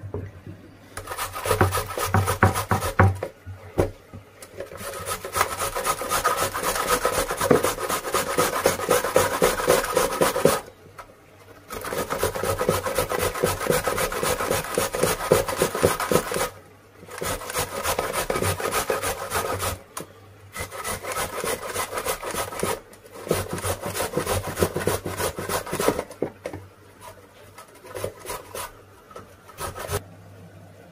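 A carrot being grated on a handheld grater: fast back-and-forth rasping strokes in long runs, broken by brief pauses every few seconds.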